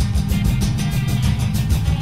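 Rock music: guitar over drums with a steady beat.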